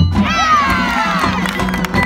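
Many voices shouting together, the pitch sliding down over about a second and a half, over the marching band's percussion, which keeps playing underneath.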